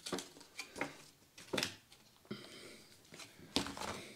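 Light clicks and taps of thin plastic seed-tray containers being handled on a table, the loudest about one and a half seconds in, with a soft rustle a little past halfway.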